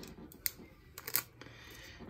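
A few faint sharp clicks of CPU-cooler hardware being handled as a part is taken off it: one about half a second in, then a quick cluster of three about a second in.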